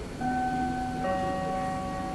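Airport public-address chime: two bell-like notes about a second apart, the second lower, each ringing on. It is the attention signal that comes just before a spoken announcement.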